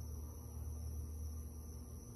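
Quiet room tone: a steady low hum with faint hiss and no distinct sound events.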